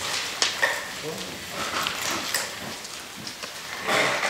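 Meeting-room handling noise: papers being passed and shuffled, with a few sharp taps, under quiet, indistinct talk.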